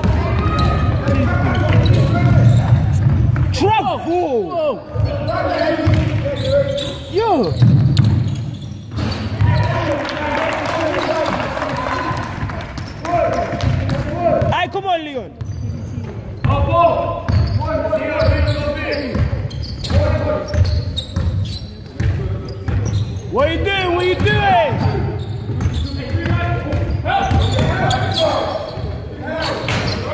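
A basketball being dribbled and played on a sports-hall wooden court: repeated ball-bounce thuds with a few sharp squeaks of trainers on the floor, under indistinct shouting from players and onlookers, all echoing in the large hall.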